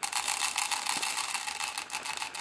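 Rapid, dense mechanical clicking, like a ratchet turning, that starts suddenly and runs steadily; the sound is thin, with little low end.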